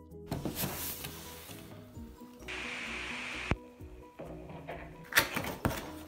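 Background music under the rustle and scrape of packaging as a coffee machine is lifted out of its box: a plastic bag crinkling and molded-pulp cardboard sliding. A longer hiss of rubbing ends in a sharp click about three and a half seconds in, and more crinkling comes near the end.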